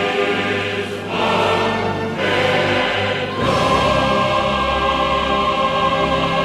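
Choral music: a choir singing sustained chords over low held notes, the chords changing every second or so.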